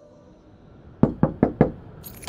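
Four knocks on a door in quick succession, about a second in: someone knocking to be let in.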